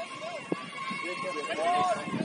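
Voices calling out on an outdoor football pitch, short shouts from players and spectators, with one sharp knock about half a second in.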